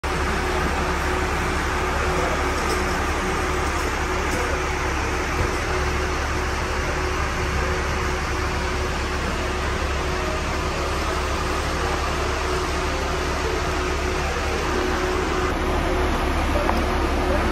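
Steady low rumble and hum of a bus station, from idling coaches and machinery, with a constant mid-pitched hum and indistinct voices in the background.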